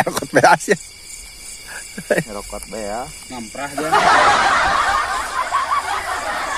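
A man laughing, then from about four seconds in a loud rustling of tall grass as someone pushes through it, over a steady chirring of night insects.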